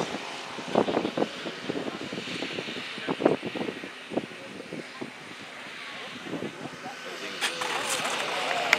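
Distant propeller noise from an electric radio-controlled model cargo plane as it comes in to land, a steady faint hum with scattered voices over it. The voices grow louder near the end.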